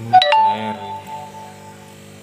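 A single bell-like chime strikes about a quarter of a second in and rings on, fading out over about a second and a half, over steady background music.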